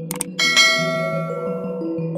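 Two quick clicks, then a bright bell chime that rings out and fades: a notification-bell sound effect, over background music.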